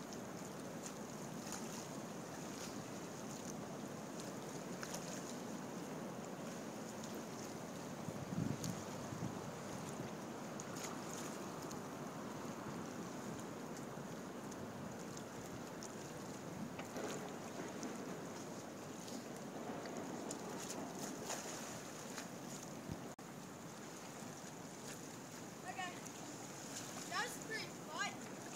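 Steady wind noise on the microphone over lake water lapping, with a brief louder low sound about eight seconds in.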